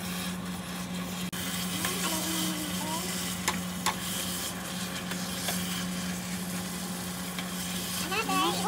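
Taro leaves and onions in coconut milk sizzling and simmering in a nonstick pan while a spatula stirs them, with two sharp clicks of the spatula on the pan a little past halfway. A steady low hum runs underneath.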